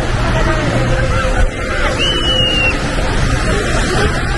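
Beach ambience: steady surf and sea-wind rumble on the microphone, with the distant chatter and calls of a crowd of beachgoers. A short high call rings out about two seconds in.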